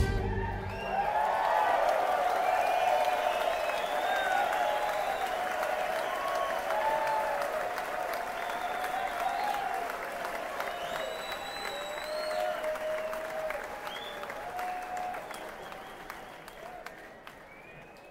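Rock concert audience applauding, cheering and whistling as the band's last chord cuts off, heard from within the crowd. The applause gradually dies away.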